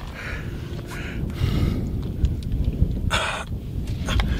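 A man's strained breathing and grunts as he clambers down, with a sharp breath a little after three seconds in, over a low rumble of handling noise on the hand-held camera's microphone.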